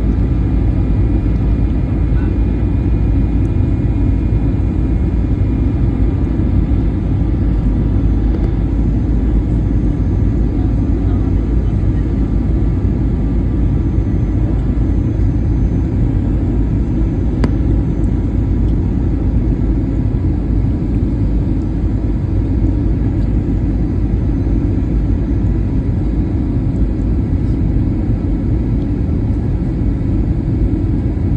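Steady airliner cabin noise during the descent: a loud, even rumble of engines and airflow, with one faint click about two-thirds of the way through.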